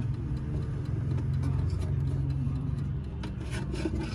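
Light knocks and rubbing of a hand moving about inside the wooden case of an ODO 368 wall clock, over a steady low hum.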